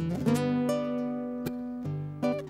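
Acoustic guitar playing an instrumental passage of a zamba: chords and single notes plucked and left to ring out, with a sharp pluck about one and a half seconds in.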